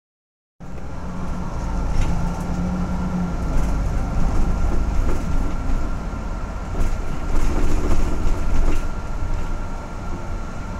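Inside a moving bus: engine and road rumble with light rattles from the cabin and a thin steady whine above it. It starts after a brief silence.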